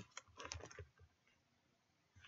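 Faint computer keyboard keystrokes: a few quick key taps in the first second.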